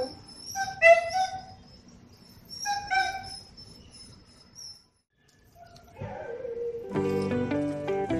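Belgian Malinois whining in short high yips, two clusters about a second and three seconds in, then background music starts near the end.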